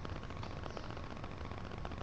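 Faint light taps and rustling of a soft brush pressing gold leaf down onto a finial, over a steady room hiss.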